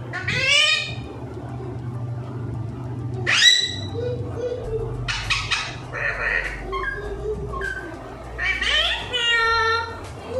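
Alexandrine parakeet giving a series of loud, harsh calls, several short ones and a longer one near the end.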